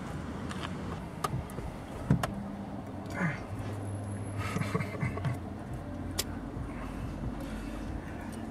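Car engine running, heard from inside the cabin as a steady low hum, with a few sharp clicks.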